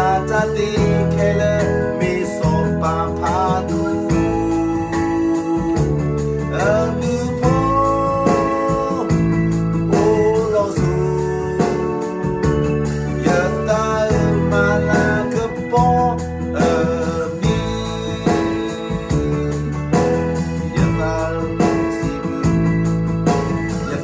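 A man singing a melodic song over steady instrumental accompaniment with a repeating bass line.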